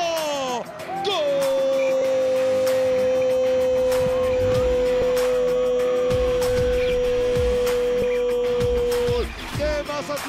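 A football commentator's long drawn-out goal shout: a single held note of about eight seconds that sags slightly in pitch before cutting off near the end, with background music underneath.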